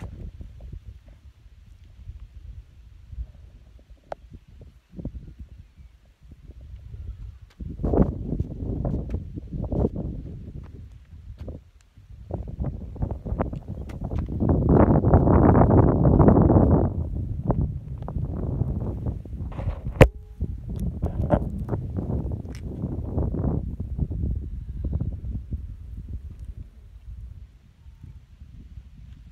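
Wind buffeting the phone's microphone in uneven gusts, strongest for a few seconds about halfway through, with a few short knocks of the phone being handled.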